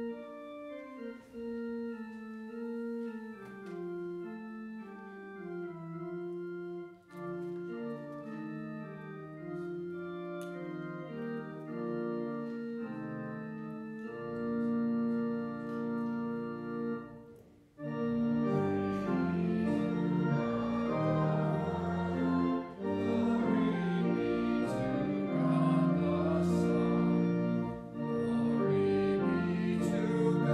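Church organ playing a hymn in sustained, moving chords. About 18 seconds in it breaks off for an instant, then comes back louder and fuller as the hymn proper begins.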